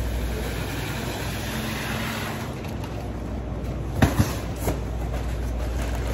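Hand truck stacked with cardboard cases rolling across a hard store floor with a steady rumble. About four seconds in there are a few sharp knocks as the load is brought to a stop and the boxes bump.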